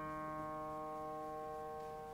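Upright piano: a held chord rings on quietly and slowly dies away, with no new notes struck.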